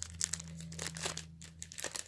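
Clear plastic packaging crinkling and crackling in irregular bursts as hands work to tear open a wrapped ornament.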